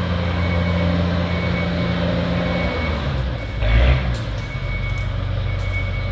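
A heavy machine's engine runs steadily with a low hum, with faint intermittent high beeping above it. A single thump comes about four seconds in.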